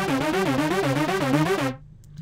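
Ableton Live Analog synth driven by the Arpeggiator at sixteenth notes, rising through the notes of a C minor chord (C, E flat, G) and repeating. It cuts off suddenly near the end.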